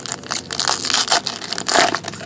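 Foil wrapper of a 2015 Topps Star Wars trading-card pack being torn open and crumpled by hand: a dense run of crackling, loudest near the end.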